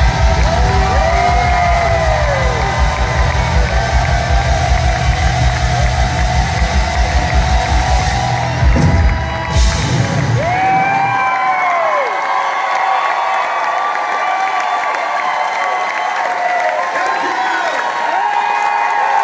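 A live rock band ends a song with guitars and a fast, driving drum beat, and the crowd whoops over it. The music stops about ten seconds in, after a few final hits, and the crowd goes on cheering, whooping and yelling.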